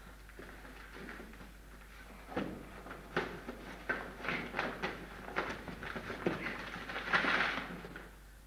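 A cardboard box being opened and rummaged through by hand: scattered rustles and light knocks, with a longer rustle near the end.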